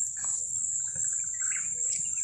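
Outdoor ambience: a steady, high-pitched insect drone with a few faint bird chirps.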